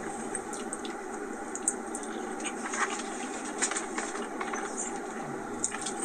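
Steady hum of a car cabin's background noise, with a few faint scattered clicks, heard as played back through a phone's speaker.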